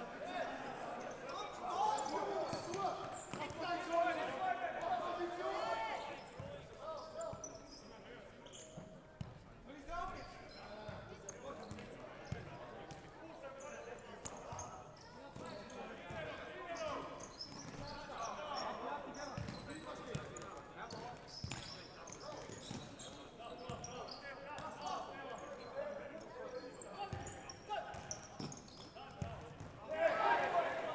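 Live futsal play on an indoor court: the ball being kicked and bouncing on the wooden floor, with players calling out, louder in the first few seconds.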